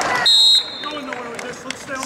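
Timing buzzer sounding one short, high, steady beep about a quarter second in, the loudest sound here, marking the end of a wrestling period. Shouting from the crowd comes just before it.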